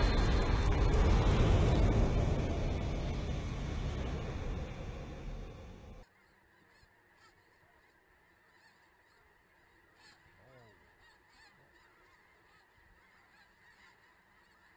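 A loud rushing noise from the intro animation fades over about six seconds and cuts off suddenly. After it, faint honking calls of snow geese circling overhead come through a few times in near quiet.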